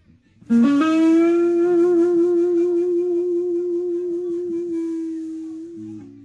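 Electric blues guitar: after a brief silent break, one note is bent up and held, sustaining with a slight vibrato for about five seconds while it slowly fades.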